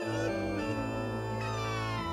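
Live band music with held organ-like keyboard chords over a steady bass note. A long, slowly falling slide in pitch begins about halfway through.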